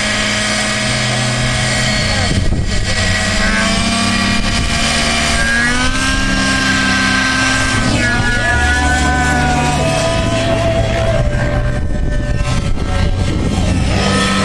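Engine of a nitro-powered radio-controlled helicopter running hard in aerobatic flight, its whine rising and falling in pitch again and again as the rotor is loaded and unloaded.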